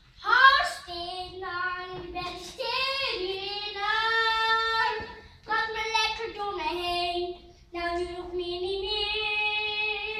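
A young girl singing into a microphone, a song sung in phrases of long held notes with brief breaks between them.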